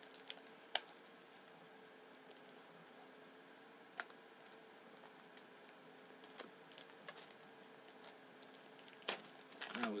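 Plastic shrink wrap being bitten, torn and peeled off a Blu-ray case: scattered crackles and clicks, with a few sharper snaps about a second in, about four seconds in and near the end.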